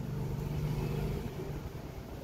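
A motor vehicle's engine running, a steady low hum that fades after about a second.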